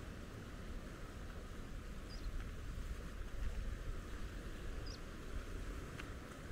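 Outdoor background of wind rumbling on the microphone and the sea, with a short, high bird chirp twice, a little after two seconds in and again near five seconds.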